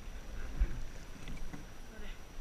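Wind buffeting the microphone of a camera mounted on a coastal rowing boat, as an uneven low rumble with a stronger gust just over half a second in, over faint water sounds around the hull and faint distant voices.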